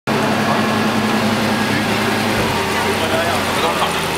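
Lamborghini Gallardo's V10 engine idling steadily, with voices faintly over it.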